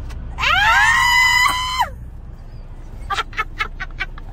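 A woman's high-pitched scream of excitement, swooping up in pitch and then held for about a second and a half. A few short bursts of laughter follow near the end.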